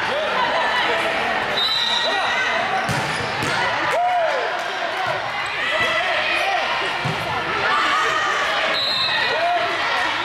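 Indoor volleyball rally in a gymnasium: sneakers squeak on the hardwood floor, the ball is struck a few times, and players call out to each other.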